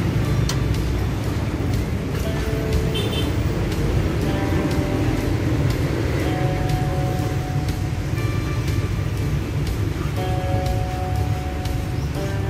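Car engine idling with the hood open: a steady low rumble with light ticking, heard close up from the engine bay, with background music playing over it.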